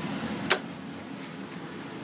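Steady ventilation hum with a single sharp click about half a second in, after which the hum is quieter.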